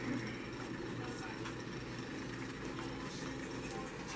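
Steady low background hum of room noise, with faint light handling sounds as soft cookie dough rounds are set down on a metal pan.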